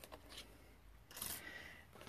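Near silence, with a faint paper rustle about a second in as a sheet of cardstock is handled on the craft mat.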